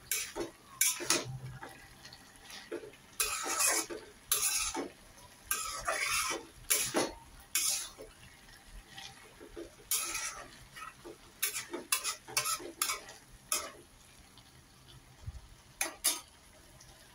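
Long metal spatula stirring and scraping a wet vegetable and lentil mix in a metal karahi, in irregular scrapes and knocks against the pan that stop near the end.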